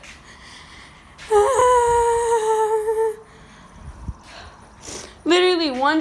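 A young woman's drawn-out vocal cry, held on one steady pitch for nearly two seconds, in fright at a spider dropping down from above. Near the end she starts talking in an agitated, sing-song voice.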